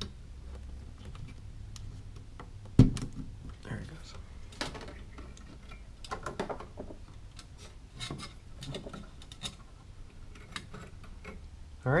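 Scattered clicks, taps and rustles of hands handling a server motherboard and tucking fan cables under its CPU coolers, with one sharp knock about three seconds in, over a low steady hum.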